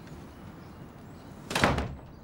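A wooden front door slammed shut: one loud bang about one and a half seconds in.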